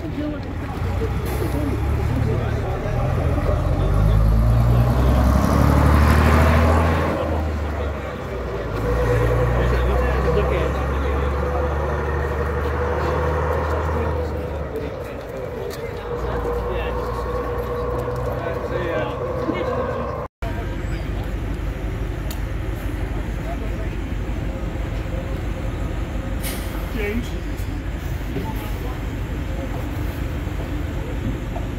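Double-decker bus diesel engine pulling away, building up and running hard for several seconds, then fading as it moves off down the road. After a cut about two-thirds of the way through, a steadier, quieter outdoor background follows.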